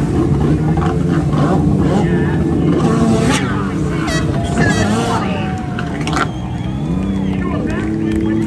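Stand-up jet ski engine running and revving, its pitch falling and rising as the craft leaps clear of the water and lands, then climbing again near the end. People's voices and shouts come in around the middle.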